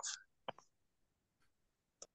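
A man's voice trailing off, then near silence with a single faint click about half a second in.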